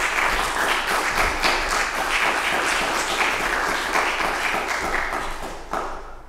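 Audience applauding, dense and steady, then dying away near the end.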